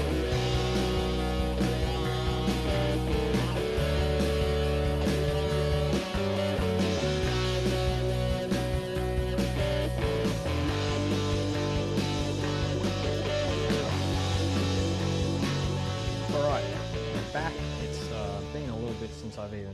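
Background music: guitar-led rock played steadily throughout.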